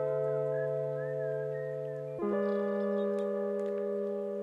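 Background music: sustained, held chords that change once about two seconds in, with a faint wavering high melody line over the first half.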